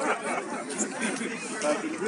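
Men chatting in a group, several voices overlapping with no single clear speaker.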